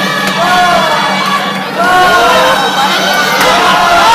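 Crowd cheering and shouting, many voices with rising-and-falling whoops, getting louder about two seconds in, over a steady low hum.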